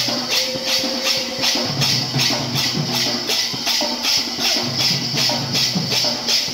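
Kirtan music: hand cymbals clash in a fast, even beat of about three to four strokes a second over a two-headed barrel drum, with a held melodic line above.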